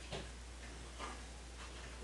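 Quiet room tone with a steady low hum and a couple of faint, soft clicks.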